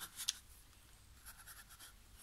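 Faint scratching of a paintbrush picking up paint from a watercolour palette and dabbing it onto a scrap of watercolour paper, in a few light strokes.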